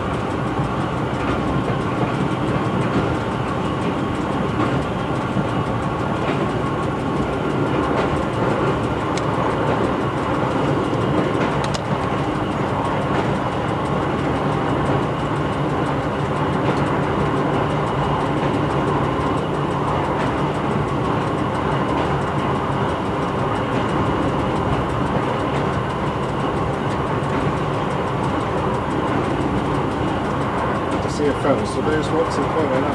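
Y1 diesel railcar, rebuilt with Volvo bus engines and an Allison transmission, running steadily along the line as heard inside the driver's cab. Its engine and transmission drone under the rumble of the wheels on the rails, with a few faint clicks from the track.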